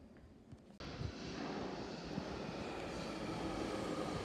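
London Underground Jubilee line train (1996 stock) at the platform: a steady rumble and rush of train noise that comes in suddenly about a second in and holds.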